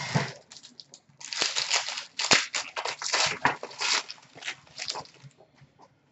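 Trading cards and their packaging being handled: irregular rustling, scraping and crinkling of card stock and wrapper, with a sharp click a little past two seconds in.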